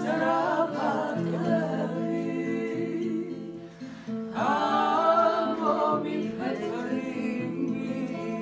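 A few women singing a song together to a strummed acoustic guitar, with a short break between phrases just before the middle.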